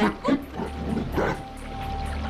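A woman's few short, strained cries and groans over dramatic background music, with a held high note entering about a second in.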